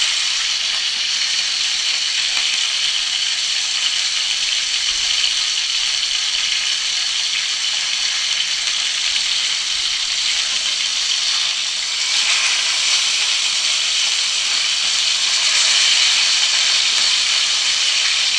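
Whole cencaru (torpedo scad) frying in hot oil in a pan: a steady sizzle that swells a little twice in the second half.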